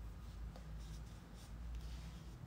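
Faint rustling and light scratching close to the microphone over a low steady rumble, with a few soft ticks.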